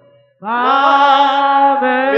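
Singing: after a brief break, a single voice comes in about half a second in and holds a long, steady note.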